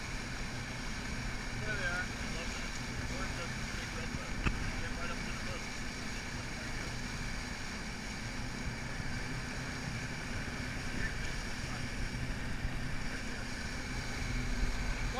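Twin Evinrude outboard motors running steadily at speed, a constant hum, over the rush of the churning wake and wind on the microphone.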